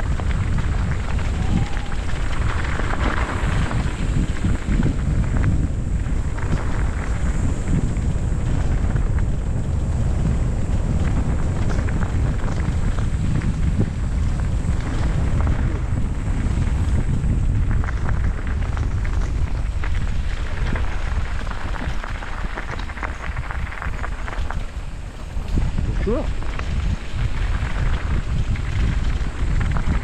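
Wind buffeting the camera microphone and tyres rumbling over loose gravel as a bike rolls down a forest track. The noise holds steady and dips briefly a little before the end.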